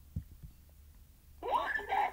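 A child's voice sounds briefly near the end, after two soft low thumps in the first half second, over a low steady hum.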